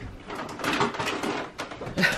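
Two dogs playing rough on a fabric-covered couch: irregular scuffling, rustling and light knocks as they wrestle and jump about.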